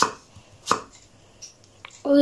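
Chef's knife chopping courgette on a wooden cutting board: a sharp knock of the blade on the board at the start and another about three-quarters of a second in, with a few faint taps after.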